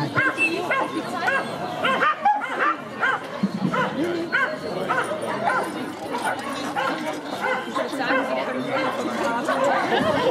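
A dog barking over and over, about two barks a second, with crowd chatter behind it.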